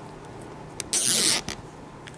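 A plastic cable tie pulled tight through its locking head: one short zip about a second in, lasting under half a second.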